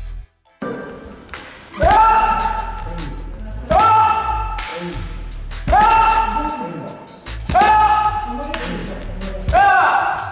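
Five times, about two seconds apart, a sharp knock followed by a loud, drawn-out kiai shout that rises quickly and then holds. These are the repeated strike-and-shout exchanges of a jukendo drill.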